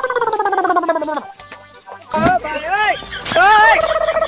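Comedy sound effects laid over the skit: a warbling tone that slides down for about a second, then, after a short pause, a few quick rising-and-falling swoops and a held note near the end.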